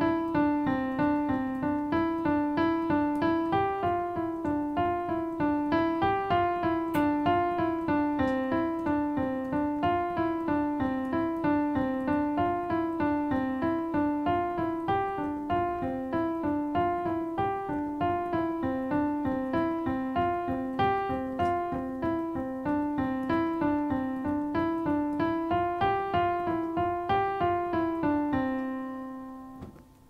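Digital piano playing a single-line five-finger exercise in the middle register: even, steady notes stepping up and down a few adjacent keys in repeated figures like C-D-E-F-G-F-E-D. The run ends on a held note that dies away near the end.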